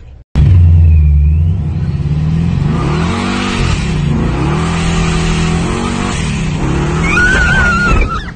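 Supercharged 572 big-block V8 running loud, its pitch sweeping up and down in several revs. A wavering high whine comes in near the end.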